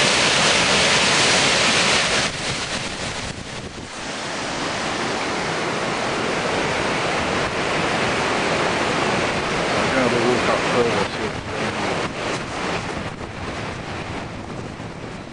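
A brook in flood, with fast white water rushing loudly and steadily. It is loudest for the first two seconds, dips briefly, then settles into a slightly quieter, even rush.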